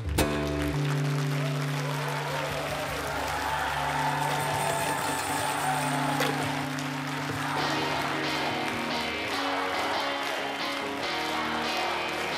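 Live guitar music: long held, sustained guitar notes with a wavering higher melody over them, and an audience clapping and applauding from about halfway through.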